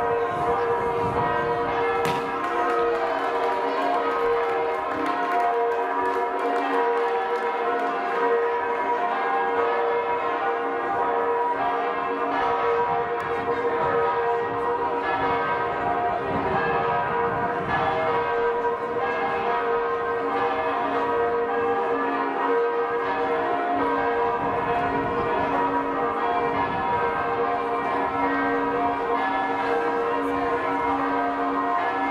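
Church bells ringing steadily and without a break, several tones overlapping: festive ringing for a wedding as the couple leaves the church.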